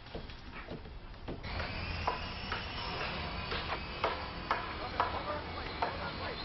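Loud work noise of repeated knocks, about two a second, as of hammering, growing busier from about a second and a half in.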